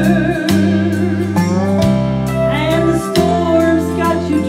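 A woman singing a southern gospel song into a microphone over instrumental accompaniment with guitar, the bass notes changing about every second and a half.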